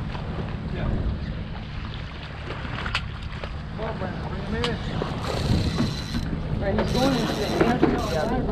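Wind buffeting the camera microphone on a small boat at sea, with water moving against the hull: a steady low rumble throughout. A few sharp clicks and, in the second half, stretches of hiss come and go, along with faint voices.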